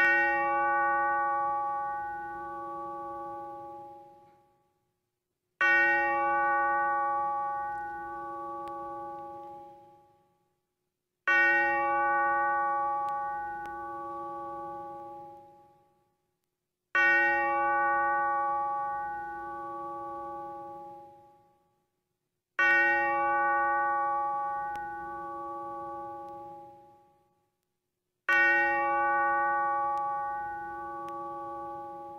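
A bell tolling slowly, one stroke about every five and a half seconds, six strokes in all, each ringing out and dying away before the next. These are strokes of the eleven tolled to mark the hour of eleven.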